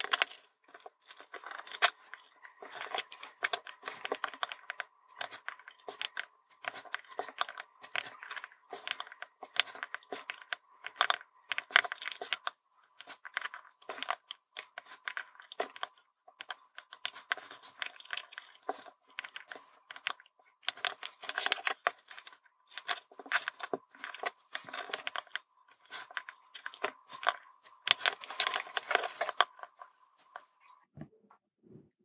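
Close-up small handling sounds of SMD soldering: steel tweezers and a soldering iron tip tapping, clicking and scraping on a small circuit board. The clicks come irregularly and densely, in short clusters.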